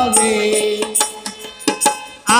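Harmonium holding a steady chord that dies down, with a few sharp percussion strikes, between sung lines of a Bengali folk song.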